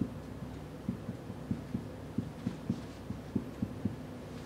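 Marker tip knocking and scraping on a whiteboard as characters are written: a series of short, soft knocks about three a second, over a steady low hum.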